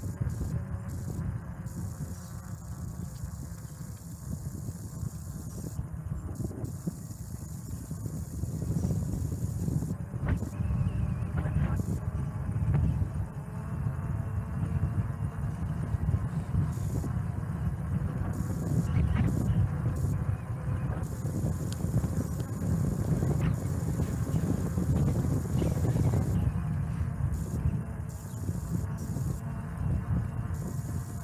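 Wind buffeting the microphone of a camera on a moving bicycle, a low, uneven rumble mixed with tyre noise on asphalt, growing stronger about eight seconds in.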